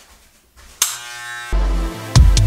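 Corded electric hair clipper switched on a little under a second in, then running with a steady buzz. Bass-heavy background music starts about halfway through and is louder than the clipper.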